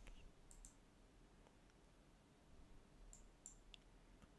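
Near silence with a few faint computer mouse clicks: two about half a second in and three more close together near the end, where a right-click opens a menu.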